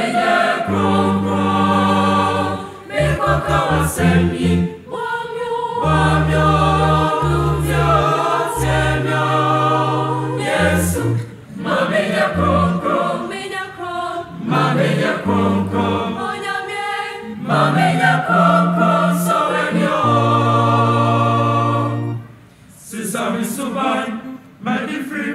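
Mixed-voice school choir singing a choral gospel piece in parts, in phrases of a few seconds with short breaks between them.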